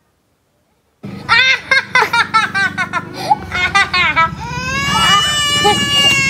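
A second of silence, then a burst of rapid, choppy high-pitched laughter, turning about four seconds in into a toddler's long, loud wailing cry after being scratched by a kitten.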